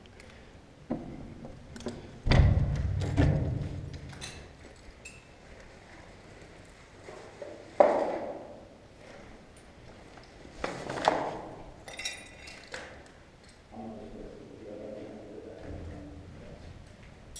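Knocks and thuds of people climbing in through a broken window frame, with a heavy thump about two seconds in, sharp knocks near eight and eleven seconds, and a few light clinks in between.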